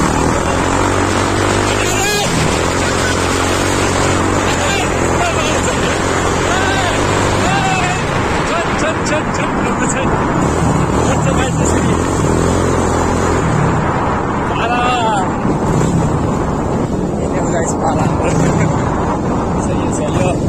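Motorcycle engine running while riding, with heavy wind noise on the microphone; the engine note shifts in steps several times as the speed changes.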